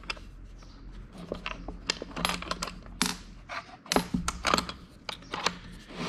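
A scattered series of small clicks and light knocks from handling a closed wooden instrument case and its brass fittings, over a faint steady hum.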